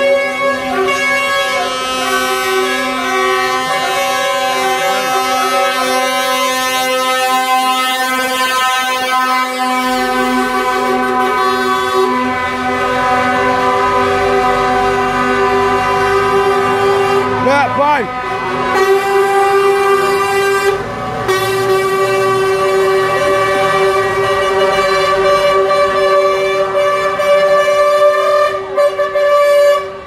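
Lorry air horns sounding almost without a break from a truck convoy, several steady pitches overlapping. The mix of tones changes a few times, with a wavering pitch about halfway through.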